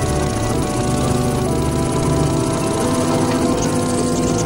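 Experimental electronic music: layered synthesizer drones, many held tones over a low pulsing rumble and a noisy hiss. Short high blips come in near the end.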